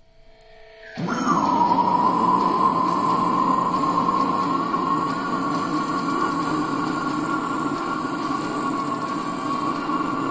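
A long screamed deathcore vocal comes in suddenly about a second in and is held at a steady pitch for roughly nine seconds.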